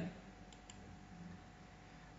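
Near silence: faint room tone with a steady faint hum and two faint short clicks about half a second in.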